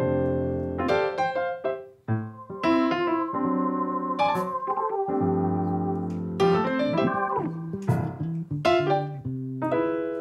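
Nord Stage keyboard played in a slow passage of chords and melody notes, each note ringing and fading.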